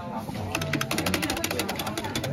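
Rapid clicking of computer keys being typed, starting about half a second in, about ten clicks a second, with voices talking in the background.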